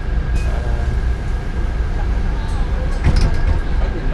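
Inside a bus cabin: the bus's engine gives a steady low rumble, with a thin steady whine above it. A few short clicks and knocks come about three seconds in.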